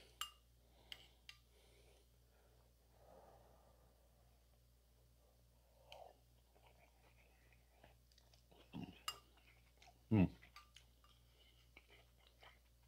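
Mostly quiet eating sounds: a spoon clicking faintly against a bowl and soft chewing as a spoonful of stew is tasted, then a short "hmm" of approval about ten seconds in.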